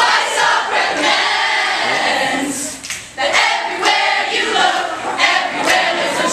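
A large group of voices singing together loudly, breaking off briefly about three seconds in before going on.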